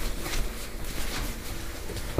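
Rustling handling noise from a phone being moved about while it records, with a few soft knocks and a low rumble.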